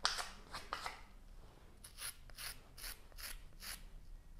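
A metal rib scraping over the surface of a leather-hard clay pinch pot in short, repeated strokes, dragging off the finger marks. The strokes come in a quicker run of about three a second over the last two seconds.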